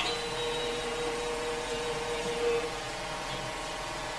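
Steady background hiss and hum in a pause of the recitation, with a faint held tone that stops about two and a half seconds in.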